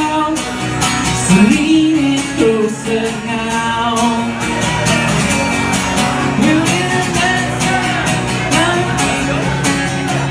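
Live pop-rock song with guitar and a voice singing the melody over steady chords.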